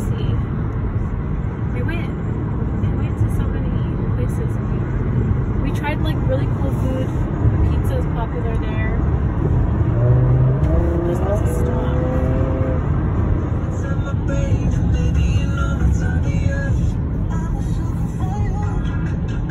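Steady low rumble of tyres and engine heard inside a car's cabin at highway speed.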